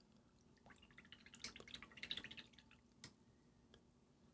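Faint wet clicks and small taps of a paintbrush being rinsed in a water pot, bunched together from just under a second in to about two and a half seconds, then one sharper tick shortly after three seconds.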